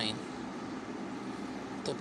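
A pen scratching on paper as a digit and a line are written, over a steady background noise.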